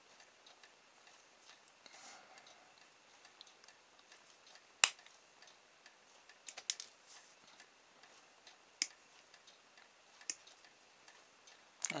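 Small side cutters snipping at the plastic stop peg on an RC servo's output gear: one sharp snap about five seconds in, then a few fainter clicks.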